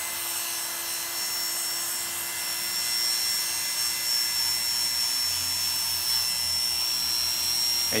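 Oster Classic 76 hair clipper with a 3½ detachable blade running steadily, cutting short hair upward against the grain at the back of the neck.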